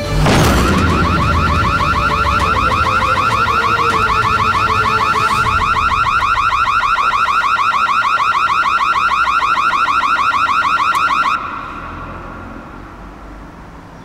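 A bang, then a house burglar alarm siren sounding loud and steady with a fast electronic warble. It cuts off suddenly about eleven seconds in, silenced by entering the code on the door keypad.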